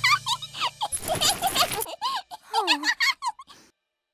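Short, high-pitched squeaky vocal sounds from cartoon characters, with a brief rushing noise about a second in; the sound stops shortly before the end.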